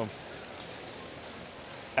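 Steady background patter of a running LEGO Great Ball Contraption: plastic balls rolling and dropping through LEGO modules, with their motors and gears running.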